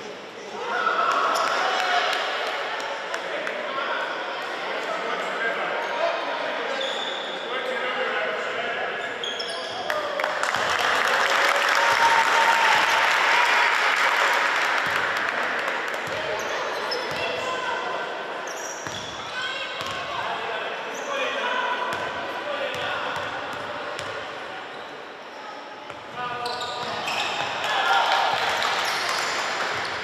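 Many voices of spectators and players echoing through a large sports hall, swelling louder for a few seconds near the middle, with a basketball bouncing on the wooden court at the free-throw line.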